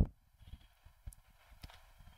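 A few faint, scattered clicks and taps from drawing with a stylus on a screen, otherwise quiet.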